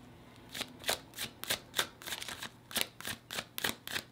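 A tarot deck shuffled by hand: a steady run of short card-on-card clicks, about four a second, starting about half a second in.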